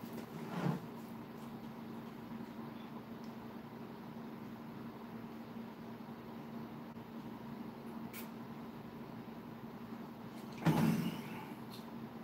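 Plastic gallon water jug being handled over a steady low room hum: a short knock about half a second in as it is picked up, and a louder brief thud with rustle near the end as it is set back down.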